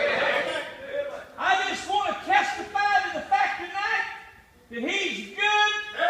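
A man's voice calling out in short, loud phrases with sweeping pitch, in a large hall; the words are not clear, and there is a brief pause about four and a half seconds in.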